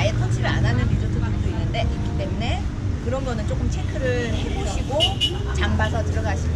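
A woman talking in Korean, over a steady low background rumble.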